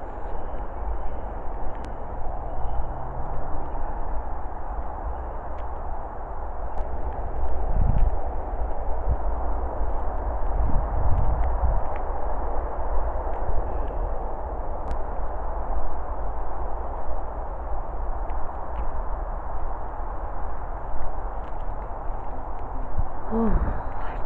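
Steady rushing outdoor background noise with a low rumble, like wind on the microphone. A few dull handling thumps come about eight and eleven seconds in.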